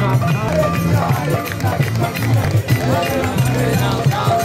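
Loud music mixed with the voices of a large crowd chanting and singing together, as at a devotional kirtan.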